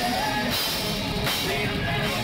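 Heavy metal band playing live on stage: drum kit with cymbals and distorted electric guitars, picked up close by a phone's microphone.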